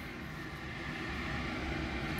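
Steady rumble of a jet airliner passing overhead on its landing approach, growing slightly louder.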